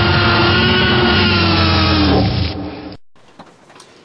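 A dinosaur roar sound effect: one long, loud roar that fades near the end and cuts off about three seconds in.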